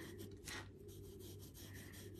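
Faint scratch of a pencil shading on a small paper tile, with one slightly louder stroke about half a second in.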